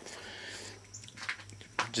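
A short pause in a man's speech filled with faint mouth and breath noises: a soft breath at first, then a few small clicks and a lip smack just before he speaks again.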